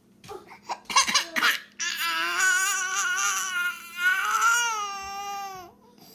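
Baby crying: a few short fussy sobs, then from about two seconds in a long wailing cry that dips briefly and carries on. The crying is set off by the other baby pulling the pacifier out of its mouth.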